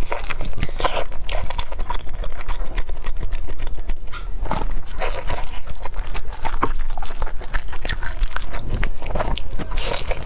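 Close-miked biting and chewing of soft dumplings: a steady run of short mouth clicks and smacks.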